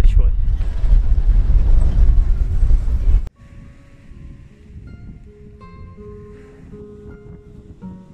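Loud wind buffeting the microphone for about three seconds, cutting off abruptly. Quiet acoustic guitar music follows.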